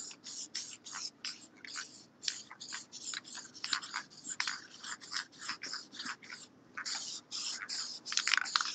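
Aerosol can of Krylon UV Archival matte varnish spraying in quick short bursts, about four a second, laying a sealing coat over the alcohol ink.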